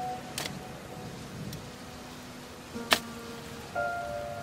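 Slow background music of held notes, over two sharp strikes of a shovel blade driven into the ground, about half a second in and again near three seconds; the second strike is the louder.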